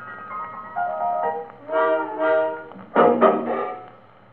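Closing bars of a 1927 jazz dance band fox trot played from a 78 rpm shellac record on an EMG oversize acoustic gramophone with a Meltrope III soundbox and horn: a few held notes from the band, then a short final chord about three seconds in that fades into the record's faint surface hiss.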